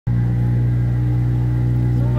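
A small river boat's motor running at a steady speed, a constant, even drone that does not change in pitch.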